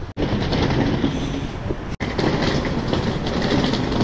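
Steady rumbling street noise at night, picked up on a body-held action camera's microphone while walking, broken by two abrupt dropouts where the footage is cut.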